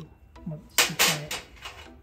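Sharp metal clinks and a short clatter, the loudest about a second in, as a steel key is handled against the cutting machine's metal clamp and tray.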